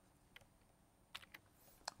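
Near silence with a few short, faint clicks scattered across the two seconds.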